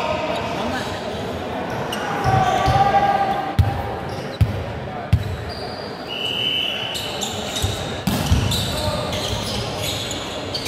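Volleyball bouncing on a wooden sports-hall floor: three sharp bounces under a second apart around the middle, with players' voices and thuds echoing in the large hall.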